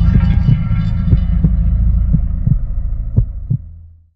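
Deep, throbbing bass rumble with heartbeat-like double thuds about once a second, fading out near the end: a title-sequence sound effect.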